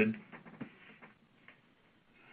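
A man's voice on a conference-call phone line trails off, then a pause of faint line noise with a few soft clicks.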